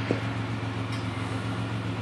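A car running, heard from inside the cabin as a steady low mechanical hum.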